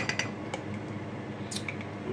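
Plastic measuring spoon scooping minced garlic from a jar and tapping against the jar and a glass measuring cup: a few light clicks at the start and another cluster about one and a half seconds in.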